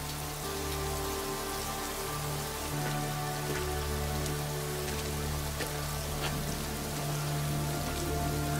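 Steady rain falling, with a few faint drip ticks, under low sustained notes of a film score that shift about three seconds in.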